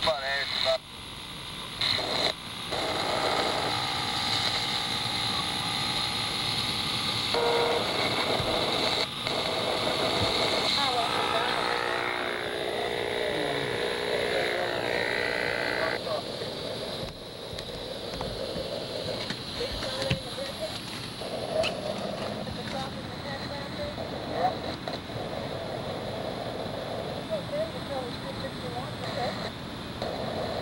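Indistinct voice transmissions from a handheld two-way radio over steady hiss, broken by a few clicks in the first seconds. About halfway through the sound drops to a softer, quieter murmur.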